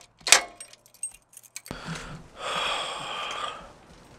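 Unlocking a bicycle's frame lock by the rear wheel: a sharp metallic snap about a third of a second in as the lock springs open, then smaller clicks and keys jangling. Near the end comes a second or so of rustling as the bike is handled.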